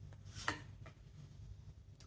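A tarot card drawn from the deck and laid down on a cloth table cover: one short soft slap about half a second in, with faint card rustles around it.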